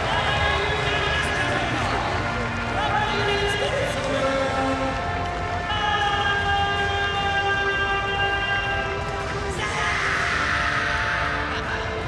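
Arena music with long held notes, over the general noise of a crowd.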